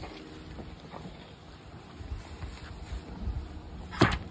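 Wind buffeting the microphone in uneven low rumbles, with a sharp wooden knock right at the end as the top bar hive's wooden side panel is handled.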